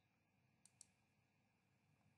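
Near silence: room tone, with two faint computer clicks close together a little under a second in.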